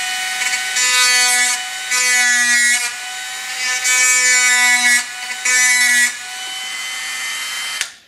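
Dremel rotary tool running at a steady high whine, grinding plastic off the upper tooth of a holster insert block's slide lock. Four short passes bite in, each louder and rougher, and the tool cuts off just before the end.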